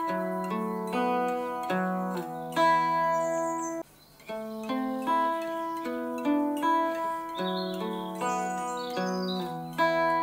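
Archtop guitar picking a riff of two-note shapes on the D and G strings moved up and down the neck, each shape followed by the ringing open E string (open B on the lowest shape). There is a brief stop about four seconds in, then the riff starts again.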